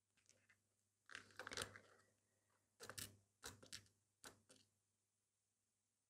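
Faint, light clicks and taps of small crystals and a picking tool being handled at a plastic crystal case and metal pendant, in a few short clusters from about a second in until a little past the middle.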